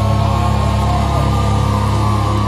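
A rock band playing live through a PA, with electric guitar and bass holding sustained, ringing notes and no drum hits.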